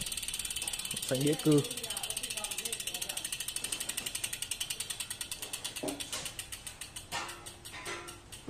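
Rear-hub freewheel ratchet of a Java Fuoco F4 aluminium road bike clicking rapidly as the rear wheel coasts, the clicks gradually slowing as the wheel loses speed.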